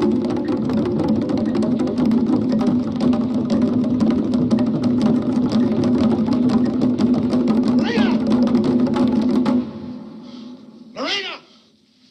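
Fast ritual drumming under voices chanting a steady held note, cutting off abruptly about two seconds before the end, followed by a single shouted cry.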